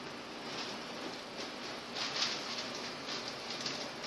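A large sheet of calligraphy paper rustling as it is handled, lifted and pressed flat against a shelf to hang it, in several brief, irregular rushes.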